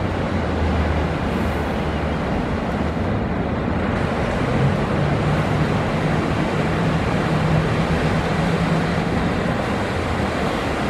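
Twin outboard motors of a ski boat running under power through breaking surf, heard together with the wash of the waves. The engine note steps up in pitch about halfway through.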